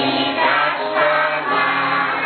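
A choir singing a Christmas carol in sustained notes over a steady instrumental accompaniment.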